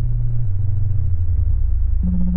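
Deep synthesizer bass tones from a tracker module: low held notes that step up and down in pitch every half second or so.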